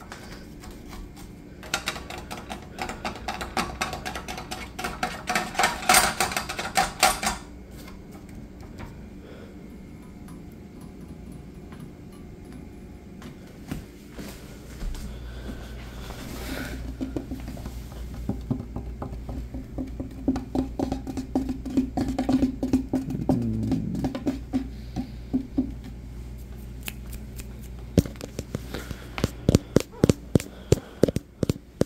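Fingertips tapping and scratching on household objects in quick, uneven taps. One passage near the start rings with clear tones, and a low steady hum comes in about halfway.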